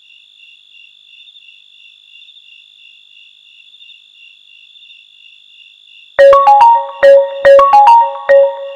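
Faint crickets chirping steadily. About six seconds in, a mobile phone starts ringing loudly with a marimba-style ringtone of short repeated notes.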